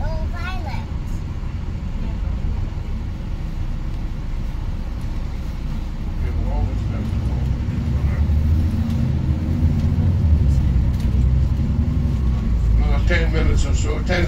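Bus engine and road rumble heard from inside the upper deck of a double-decker bus on the move, a low steady drone that grows louder about eight seconds in. A voice is heard briefly at the start, and the tour guide begins speaking near the end.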